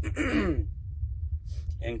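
A man's short breathy vocal sound, falling in pitch, in the first half-second, over a steady low hum.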